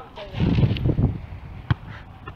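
Voices and laughter in the first second, then a single sharp thump late on as the ball is struck.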